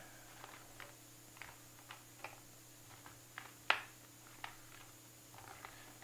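Faint scattered clicks and crackles of a small box of microscope slides being opened by hand, with one sharper click about two-thirds of the way through.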